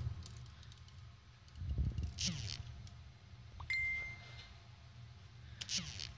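Fingernail picking at and peeling the plastic screen-protector film off a smartphone's glass, heard as faint scratching and a brief rustle about two seconds in. Just past the middle, a click is followed by a short, steady high beep.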